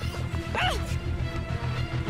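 Dramatic background music with a steady low throbbing beat. Under a second in comes a woman's short cry, rising and then falling, amid a few hits from the scuffle.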